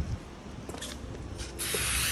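Aerosol spray-paint can hissing as a black outline is sprayed: two short bursts, then a steady spray starting about one and a half seconds in.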